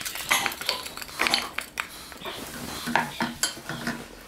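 A wooden spatula and a ceramic serving dish knocking and scraping against a nonstick frying pan as crisp-fried okra is tipped into a yogurt mixture and stirred in, with irregular clinks and scrapes.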